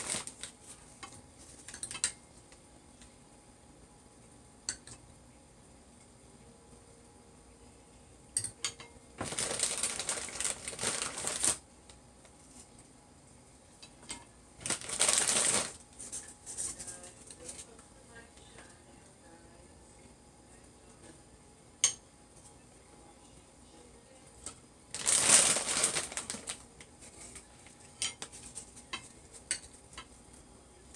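Plastic cream-cracker packet rustling and crinkling in three bursts, about nine seconds in, at fifteen seconds and near twenty-five seconds, with scattered light clicks and knocks of utensils and crockery in between.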